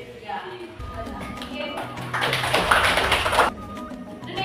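Background music with a singing voice; a bit past halfway, a loud burst of hiss-like noise lasts about a second and then cuts off suddenly.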